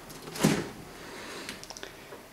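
Stainless-steel refrigerator door pulled open by its handle: a short whoosh about half a second in as the door seal releases, then a few faint clicks.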